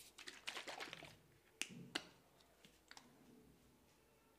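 Blue plastic coconut-oil bottle being handled, with a flurry of small plastic clicks and then two sharp clicks about half a second apart as its flip-top cap is worked open.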